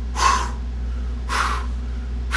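A man making two short breathy whooshing sounds with his mouth, about a second apart, imitating a towed trailer swaying from side to side at highway speed, over a steady low hum.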